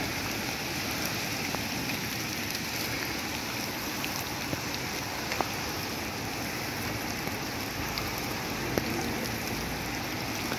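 Heavy rain pouring steadily onto a flooded road, an even hiss with a few sharp ticks scattered through.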